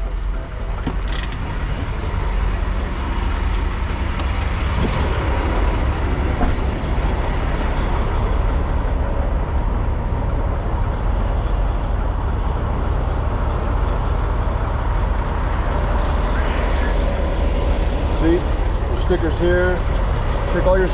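Steady low rumble of idling diesel semi-trucks, with a few sharp clicks and knocks about a second in.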